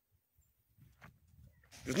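A pause in a man's talk, mostly quiet with a few faint low rumbles about a second in, then his voice starts again near the end.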